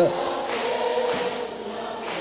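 A large congregation singing together in response to a sung line, many voices blending with no single voice standing out.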